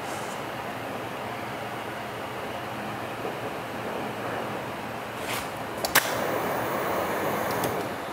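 Steady rushing hiss of a glassblowing bench torch's flame heating a glass tube, growing slightly louder for the last couple of seconds. One sharp click comes about six seconds in.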